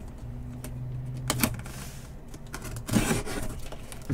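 Cardboard shipping box being handled and turned over on a table: a few sharp knocks, then a scraping rustle about three seconds in, over a low steady hum.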